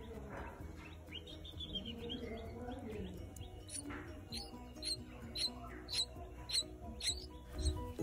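Red-vented bulbul nestlings giving soft, high begging tweets: a quick run of faint notes about a second in, then a string of about eight short, sharp tweets, roughly two a second, over quiet background music.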